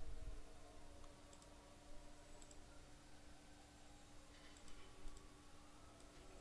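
Faint, scattered clicks of a computer mouse, a handful over several seconds, over a low steady electrical hum.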